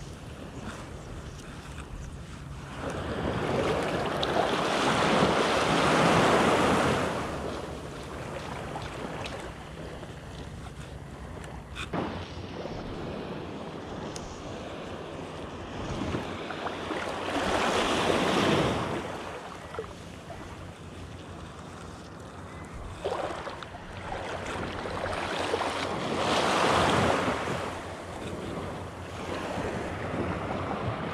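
Gentle sea surf washing in the shallows, swelling up and fading away three times over a steady wash, with some wind noise on the microphone. A single sharp click about twelve seconds in.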